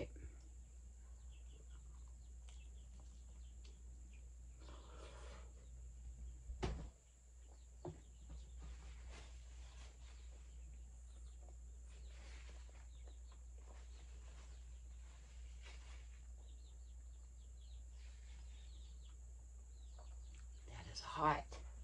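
Quiet room with a low steady hum and faint bird chirps from outside, a short breathy rush about five seconds in and a single knock just before seven seconds.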